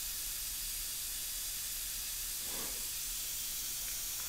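Steady high hiss with a faint low hum underneath, even throughout, with no distinct mechanical event.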